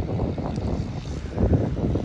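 Wind buffeting the microphone: an uneven low rumble that swells and fades.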